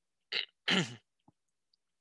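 A man clearing his throat in two short bursts about a second in, the second ending in a low voiced sound.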